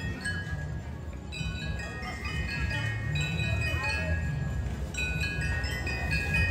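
Bell lyres of a drum and bugle corps playing a soft melody of short, overlapping high bell notes, with no drumming.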